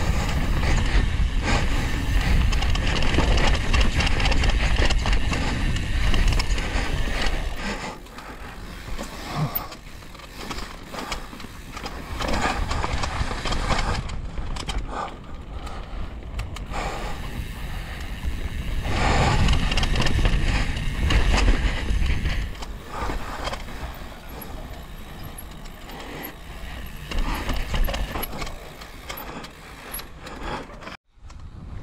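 Mountain bike descending a rough dirt and rock trail: tyres rumbling over the ground while the bike rattles. It comes in surges, loudest for the first several seconds and again around the middle, with quieter stretches between.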